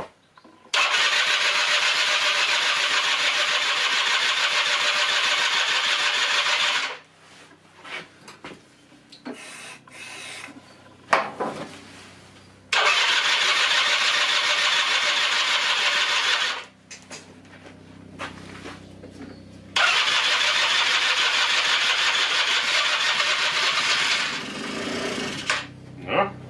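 Electric starter of a long-laid-up 1996 Rexy 50 two-stroke scooter cranking the engine in three long bursts of several seconds each, with short pauses between, on starting spray; the engine does not settle into running.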